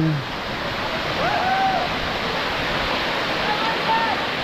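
Waterfall pouring into a pool: a steady rush of falling water. A faint voice calls briefly about a second in and again near the end.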